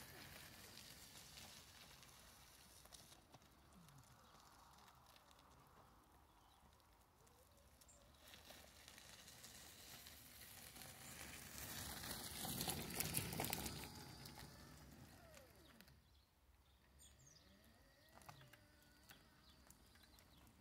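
Mostly near silence, with the faint crunch of an electric wheelchair's tyres rolling over gravel that swells in the middle as the chair drives up close, then fades.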